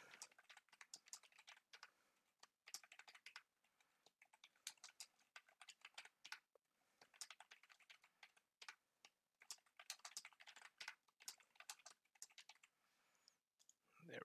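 Faint typing on a computer keyboard: short runs of quick key clicks with brief pauses between them.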